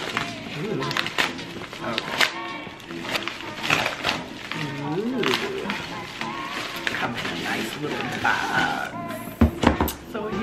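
Background music playing over the crinkling and tearing of a paper padded mailer being pulled open by hand, with a few sharp tearing sounds near the end.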